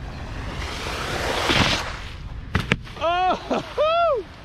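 Wakeboard skimming through shallow water: a rush of spray that swells and fades over about a second and a half, then two sharp knocks, then high, swooping shouts near the end.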